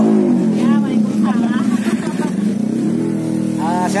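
A motor vehicle's engine running close by, its pitch dropping at the start, holding low, then rising again near the end.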